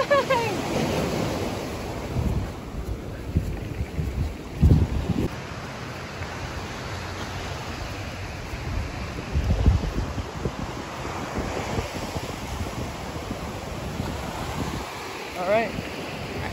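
Ocean surf breaking on a beach, a steady wash of noise, with wind buffeting the microphone in low gusts, the strongest about five and nine seconds in.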